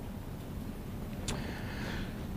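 Room tone in a pause: a low, steady background hum, with one brief faint click a little past halfway.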